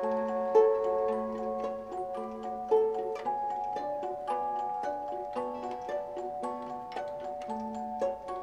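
A wooden flute plays a slow, stepwise melody over a hand-cranked paper-strip music box, whose short plucked notes come with the ticking of its mechanism.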